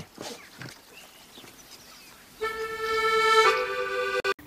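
Quiet for the first half, then background music comes in: a held accordion chord that shifts to a new chord about a second later.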